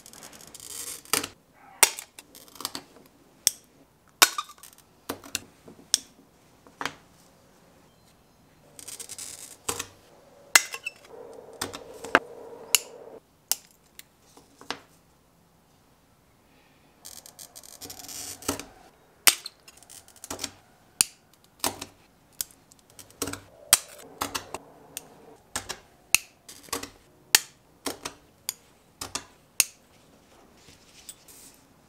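Oil-fed glass cutter scoring sheet stained glass in short hissing strokes, three times, among many sharp clicks and taps of glass pieces being snapped apart and set down on the work board.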